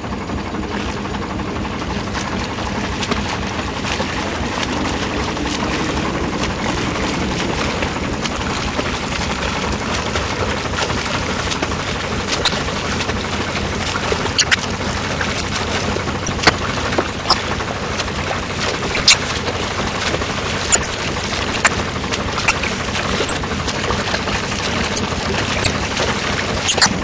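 Steady rushing noise of a boat moving on water, its motor and the water along the hull blending together. From about halfway through, short sharp clicks or splashes come every one to two seconds.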